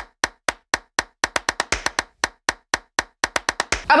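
A sound effect laid under an animated title card: about twenty sharp, dry clicks in an uneven, quickening rhythm, with dead silence between them.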